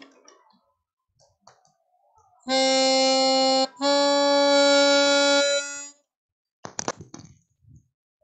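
A melodica plays two held notes, C and then C-sharp a half step higher, to show what a sharp does. A few short clicks follow near the end.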